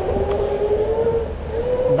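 Boosted Rev electric scooter's motor whining as it pulls away and accelerates, the whine rising slowly in pitch, over a low rumble of road and wind noise.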